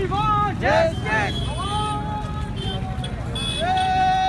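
A crowd of marchers shouting protest slogans in unison, a run of short chanted calls, with street traffic rumbling underneath.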